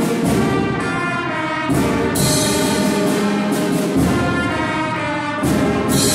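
A school concert band playing: flutes, saxophones and brass hold sustained chords, with loud accented hits that reach down into the bass a few times.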